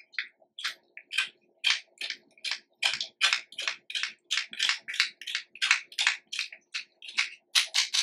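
Wooden spoon pressing and scraping blended papaya puree through a fine metal mesh strainer: short wet scraping strokes about three a second, coming closer together near the end.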